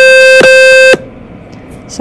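micro:bit MakeCode simulator sounding a High C alarm tone through the computer's speakers: a steady, buzzy electronic beep that restarts about twice a second and cuts off about a second in. It is the alarm the program plays while the foil switch on pin 1 reads as apart.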